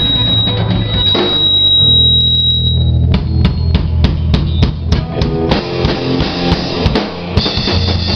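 Rock drum kit played hard in a rehearsal room, with bass drum and snare hits. In the first three seconds a high steady tone and a held low note sound over it; then come a run of sharp drum hits, about three a second. The full band comes back in near the end.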